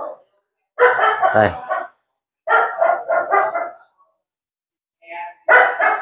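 A dog barking in a few short bursts with pauses between them.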